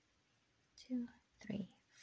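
Soft, whispered speech: a woman counting her chain stitches under her breath, two short words in the second half.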